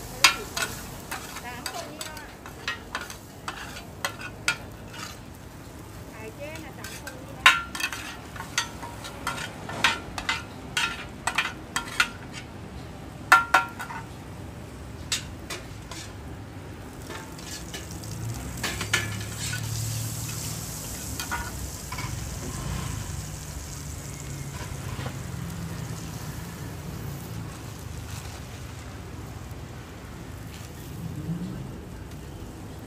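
Metal spatulas clanking and scraping on a large flat frying pan as food fries in oil, with many sharp strikes in the first half. In the second half the strikes thin out and a steady sizzle goes on.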